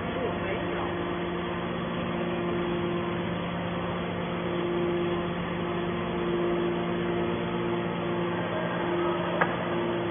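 Hydraulic scrap metal baler's power unit running with a steady hum, a higher tone fading in and out several times as the press works. A single sharp click near the end.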